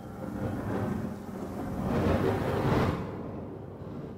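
A rumbling swell of noise that builds to a peak a little past the middle and then fades: a sound-design whoosh over a vision sequence.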